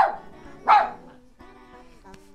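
A dog barking twice, about two-thirds of a second apart, then faint background music.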